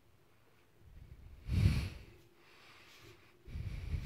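A person breathing close to the microphone: one loud, short breath about one and a half seconds in, then a softer, longer breathy sound near the end.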